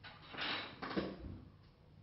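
A man's heavy breath out, heard as two soft breathy rushes of about half a second each, with faint rustling of movement.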